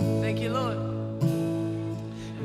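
Live worship band playing softly between sung lines: acoustic guitar over steady held chords, with a short melodic phrase that rises and falls about half a second in.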